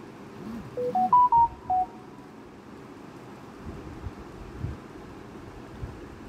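A short electronic jingle of five quick beeps, rising in pitch and then falling back, from the quiz app: its chime for a correct answer.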